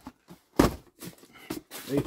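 A sharp knock about half a second in, followed by a few softer clicks and knocks, then a man's voice begins near the end.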